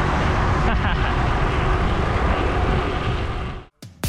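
Wind rushing over the camera microphone of a moving road bicycle, with a heavy low rumble, and a person laughing about a second in. The noise cuts off suddenly near the end.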